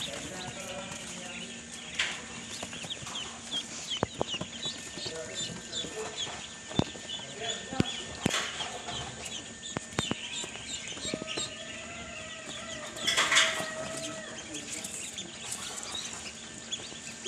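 A crowd of Pekin ducklings peeping continuously, many high, short calls overlapping, with a louder flurry of peeps about three-quarters of the way through. A few sharp knocks are heard among them.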